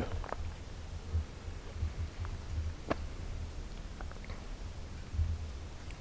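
Quiet outdoor ambience: a low, uneven rumble with a few faint clicks.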